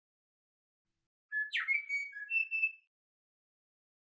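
A short bird-like whistled call lasting about a second and a half, starting a little over a second in: a brief note, a quick downward swoop, then a few clear held notes stepping up and down in pitch.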